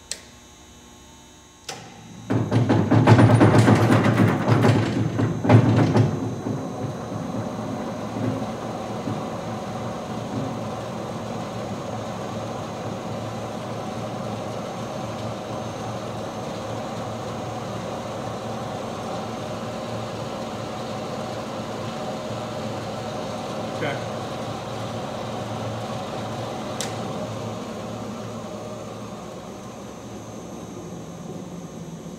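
Round vibratory screener switched on with a click. It starts about two seconds in with loud shaking for about four seconds, then settles into a steady running hum.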